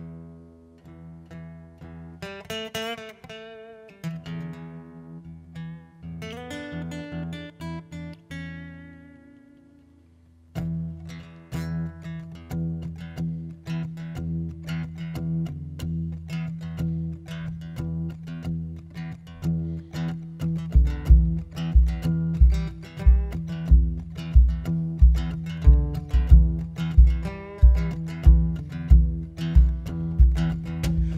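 Acoustic guitar intro: slow picked, ringing notes that fade out about ten seconds in, then steady rhythmic strumming. About twenty seconds in, a cajón joins with a steady low beat.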